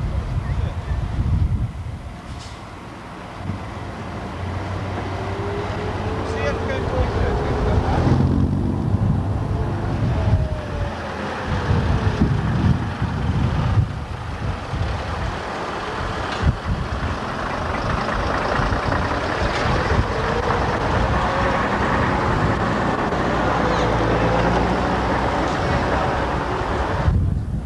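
Vintage half-cab coach's diesel engine driving slowly past across grass, its engine note rising and falling with the revs.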